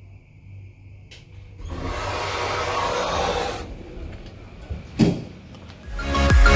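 Bonfedi hydraulic elevator arriving at the ground floor: a faint steady whine cuts off with a click about a second in, then the automatic sliding doors open with a rumbling rush lasting about two seconds. A single sharp knock comes near the end.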